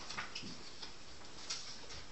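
Quiet meeting-room tone with a few light, irregular clicks and ticks.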